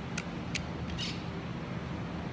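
Steady low hum of room tone with a few light clicks: two sharp ones in the first half second and a softer, hissy one about a second in.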